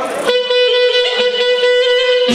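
A band instrument holds one long, steady note for about two seconds, starting just after a voice stops.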